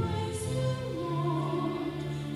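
A woman singing a gospel song in long held notes that glide between pitches, over a lower steady accompaniment.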